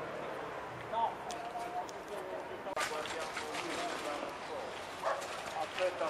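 Indistinct voices of onlookers talking outdoors, with one drawn-out call about a second in and a single sharp knock just under three seconds in.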